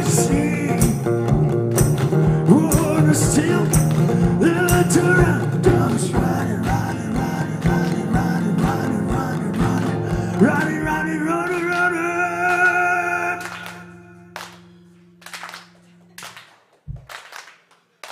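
A one-man band playing live: a man sings over strummed acoustic guitar and a steady low thumping beat. The song ends on a long held sung note and a ringing guitar chord, which die away about two-thirds of the way through.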